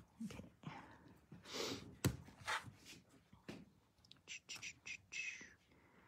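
Quiet handling of quilted fabric and an acrylic ruler on a cutting mat: soft rustles, a few sharp clicks, and faint whispered muttering.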